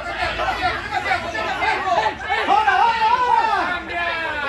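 Several voices talking and calling out over one another around a football pitch, an indistinct chatter with no single clear speaker.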